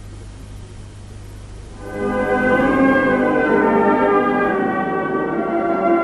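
Brass band striking up slow funeral music about two seconds in, playing held chords; before it, only a low steady hum.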